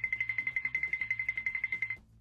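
Cartoon scurrying sound effect: one high note repeated rapidly and evenly, about a dozen times a second, like a quick xylophone tremolo.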